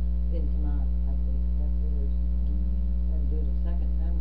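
Loud, steady electrical mains hum with its overtones, with faint voices murmuring under it now and then.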